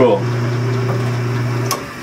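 Electric motor of an early-1950s Logan 10x24 metal lathe running with a steady hum, cut off with a click a little before the end.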